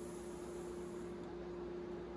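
Quiet room tone: a steady hiss with a faint, even hum.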